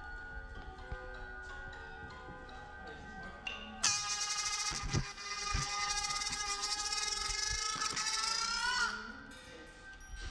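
Experimental sound performance: quiet steady ringing tones, then about four seconds in a loud, high squealing tone full of overtones. It holds for about five seconds, with two low thumps beneath it, and bends upward just before it cuts off.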